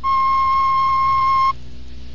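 A steady, unwavering electronic beep tone, held for about a second and a half and then cut off suddenly.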